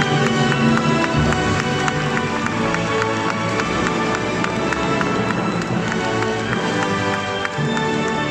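Symphony orchestra playing an instrumental passage with a steady rhythmic pulse.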